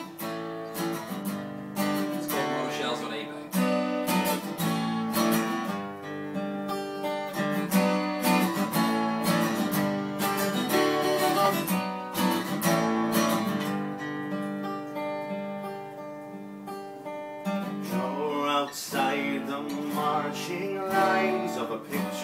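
Two acoustic guitars strumming chords together in an instrumental passage. The playing softens about two-thirds of the way through, then picks up with stronger strumming near the end.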